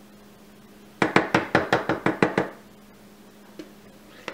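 A quick run of sharp knocks on a hard surface, about nine in a second and a half, followed by a single faint tap near the end.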